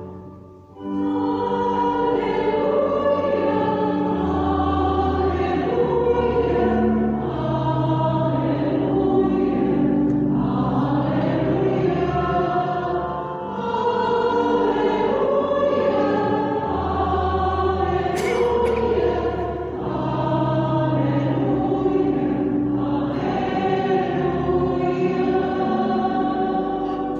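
Church choir singing with organ accompaniment: the sung acclamation between the second reading and the Gospel at Mass. It comes in about a second in, in three long phrases with brief dips between them.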